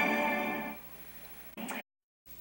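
The end of a TV newscast's opening theme music, fading out within the first second. Faint tape hiss and hum follow, then a brief sound just before the audio cuts to dead silence.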